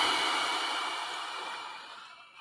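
A man's long exhaled breath close to the microphone, a hiss that starts abruptly and fades out over about two seconds.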